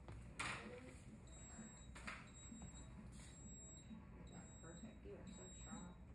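Quiet room with three brief rustles of plastic sterile drape or packaging being handled during epidural placement. A faint high electronic tone comes and goes.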